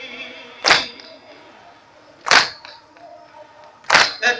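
A crowd of mourners beating their chests in unison (matam): three loud slaps, evenly spaced about a second and a half apart, with faint chanting between the strokes.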